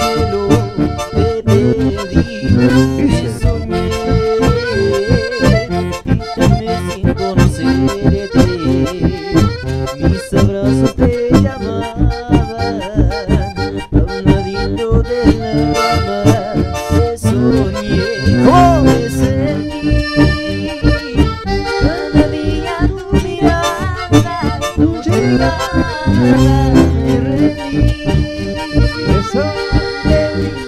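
Live band music led by accordions, over bass and guitar and a steady, driving beat. This is an instrumental passage with no singing.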